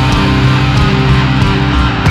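Loud rock music with guitar, playing continuously as the backing track for a dance routine.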